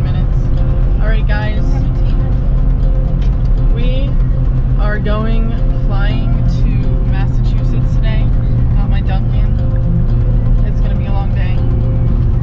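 Steady low road and engine noise inside the cabin of a moving Jeep Wrangler, with music and a voice over it.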